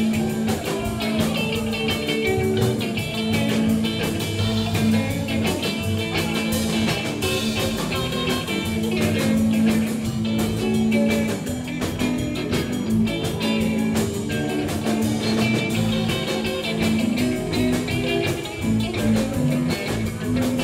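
Live rock-and-roll band in an instrumental break with no vocals: electric guitar leads over upright double bass and drums.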